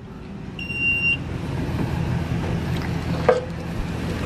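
Wheelchair lift stowing: one short electronic warning beep, then its motor hums steadily and grows louder, with a click about three seconds in.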